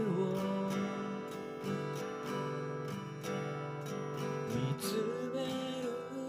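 Steel-string acoustic guitar strummed in a steady rhythm, ringing chords of a pop ballad accompaniment.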